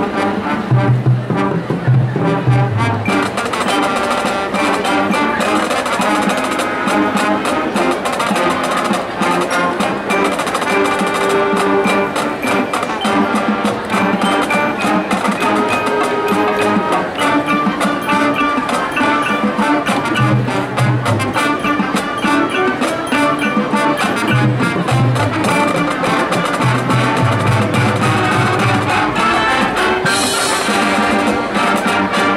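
High school marching band playing a loud, brass-led passage with percussion, heard live in an open stadium. Low bass notes come in short groups several times under the sustained brass chords.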